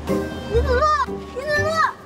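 A young woman's voice calling out a name twice in a high, pleading tone over steady background music.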